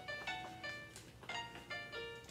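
Instrumental backing music between sung verses: a quick run of single pitched notes.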